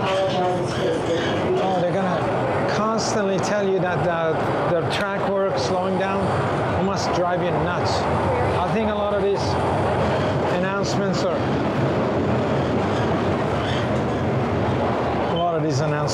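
TTC Line 1 subway train running between stations, heard from inside the car: a steady rumble of wheels and motors, with a few short clicks from the track.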